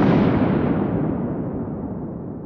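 Logo sting sound effect: the tail of a deep cinematic boom, a noisy rumble that fades slowly, its high end dying away first.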